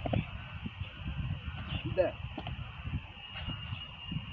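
A man speaking single words now and then, saying "there" about two seconds in, over a low, uneven rumble.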